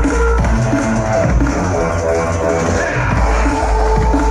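Loud bass-heavy electronic dance music played live over a festival stage sound system, recorded from among the crowd: deep pulsing sub-bass under held melodic notes.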